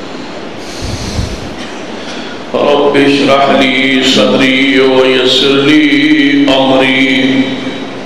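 A man chanting a long, drawn-out recitation through microphones, starting about two and a half seconds in and stopping shortly before the end, after a soft low thump about a second in.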